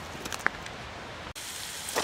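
A steady low hiss with a few faint clicks, then an abrupt cut about a second in to bacon sizzling in a small coated-aluminium MSR skillet on a camp alcohol stove.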